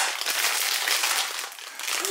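Plastic biscuit packet crinkling as it is unclipped and opened up by hand, a dense, continuous rustle.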